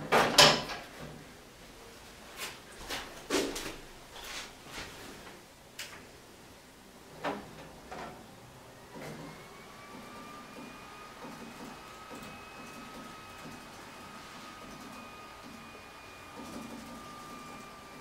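Clicks and knocks of an old beige desktop PC being handled, the loudest just after the start. About nine seconds in, a faint whine rises and then holds steady: the old computer spinning up after being switched on.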